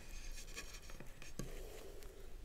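Faint handling noises: light scratchy rustling, then two soft clicks about a second in.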